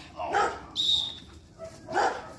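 A dog barking in short bursts, about twice, during bite-work training, with a brief high squeal between the barks.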